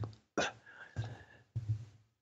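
A pause in a man's talk, filled only by quiet mouth sounds: a short breath or lip sound about a third of a second in, then a couple of faint murmured hesitation sounds.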